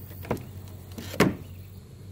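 Two knocks of a hard plastic battery box being handled on a kayak, the second one louder, about a second apart.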